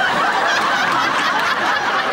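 Many people chuckling and laughing together, a steady crowd sound with no single voice standing out.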